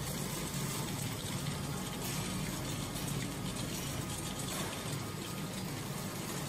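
Radial tyre shredding line and its conveyor belt running steadily, carrying shredded rubber crumb: an even rushing noise over a low hum.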